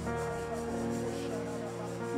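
Soft electric keyboard music with held, sustained chords.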